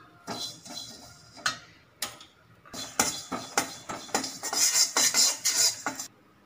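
A perforated steel spatula scraping and clinking against a stainless steel kadai as it stirs sesame seeds being dry-roasted. The scrapes come sparsely at first, then thicker and faster in the second half.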